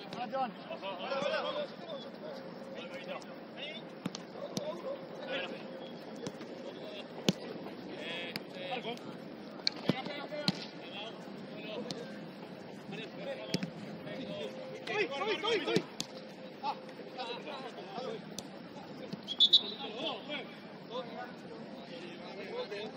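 Players shouting and calling to each other during a football match, with several sharp thuds of the ball being kicked; the loudest kick comes near the end.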